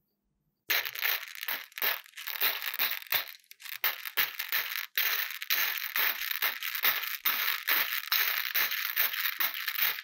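Small hard round candies clattering against each other and the dish as a hand digs into the pile, a fast run of rattles about three a second that starts about a second in.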